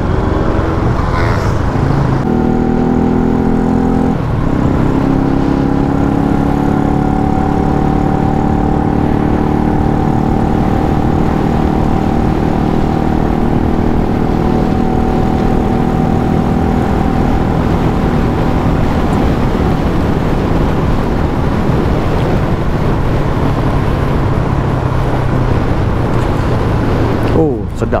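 Yamaha LC135 single-cylinder four-stroke moped engine under way, pulling up through a couple of gear changes in the first few seconds and then cruising steadily, with wind and road noise beneath. The engine is a freshly built one being run in.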